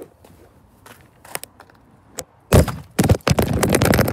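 Handling noise on the recording phone's microphone. A few faint clicks come first, then about two and a half seconds in a loud, dense run of knocks and crackling rubbing as the phone is covered or moved.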